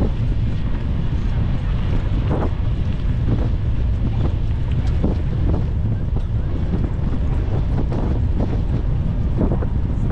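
Wind buffeting the microphone of a camera riding on a moving bicycle: a steady low rumble.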